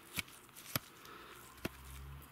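Handling noise: three light clicks spaced about half a second to a second apart, with a low hum starting near the end.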